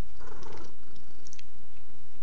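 House cat purring steadily close to the microphone, with a brief muffled sound about half a second in.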